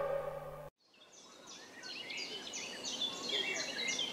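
Music fades out, then after a brief silence comes faint woodland ambience with a bird calling in a run of short, repeated high notes, about four a second.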